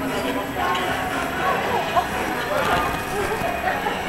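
Several people talking at once, their indistinct voices overlapping in a steady chatter, with one short sharp knock about two seconds in.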